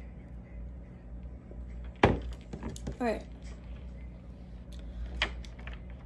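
Knocks on a stone tabletop as a tarot deck is handled: a sharp, loud knock about two seconds in and a lighter one about five seconds in, with a brief sound falling in pitch between them, over a steady low hum.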